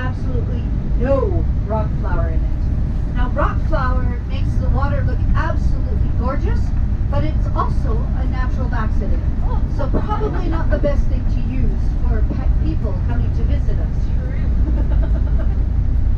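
Steady low rumble of a moving tour coach heard from inside the passenger cabin, with people talking over it throughout.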